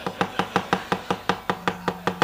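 Wayang kulit keprakan: the dalang's keprak and cempala giving a run of sharp, even clacks on the puppet chest, about five a second, the rhythmic cue that drives the puppets' action.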